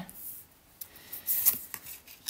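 Tarot cards being drawn and laid down on a wooden tabletop: soft swishes of card sliding on wood, loudest about a second and a half in, with a few light ticks.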